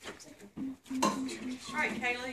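A few light clicks and knocks mixed with children's brief, quiet voices, one voice rising near the end.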